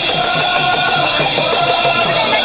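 Bhajan music with a quick steady beat of jingling hand percussion and a drum under wavering melody.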